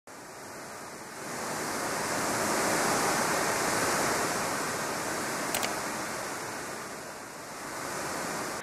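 Ocean surf washing in: an even rushing noise that swells over the first couple of seconds and slowly ebbs, with a brief sharp click about two-thirds of the way through.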